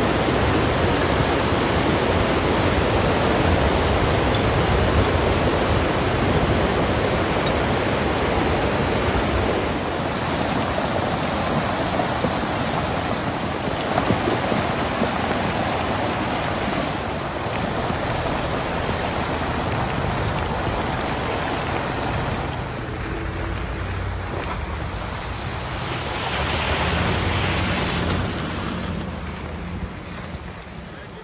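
Muddy flash-flood water rushing down a rocky wadi, a steady noisy roar mixed with wind buffeting the microphone, easing somewhat near the end.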